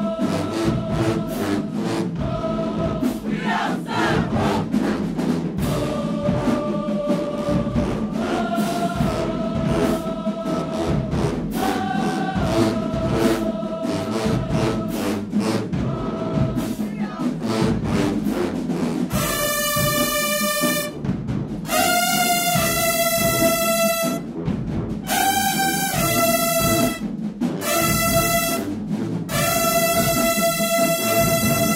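College marching band playing in a band room: brass and saxophones over a steady drum beat. From about two-thirds of the way in the horns play loud, bright held chords in short blocks, cut off sharply between them.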